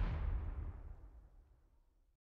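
Logo-sting sound effect: a deep, rumbling boom that fades away over about a second and a half into silence.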